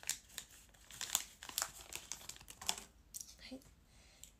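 Plastic blind-pack wrapping crinkling and rustling in irregular bursts, with a few tearing sounds, as the pack is opened by hand.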